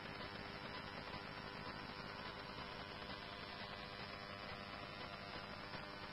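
Faint, steady static hiss with a low hum from a fire-dispatch radio audio stream, heard between transmissions.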